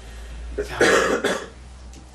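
A person coughing: a short burst of coughing about a second in.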